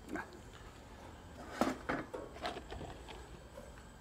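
A few faint clicks and knocks of tools and small metal clips being handled on a workbench, over a low background.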